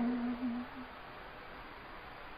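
A man's voice trailing off on one low held note for about a second, then a pause with only faint room tone.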